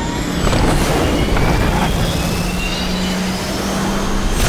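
Fighter jet engine spooling up: several rising turbine whines over a steady rush and a low hum, with a couple of short knocks in the first two seconds.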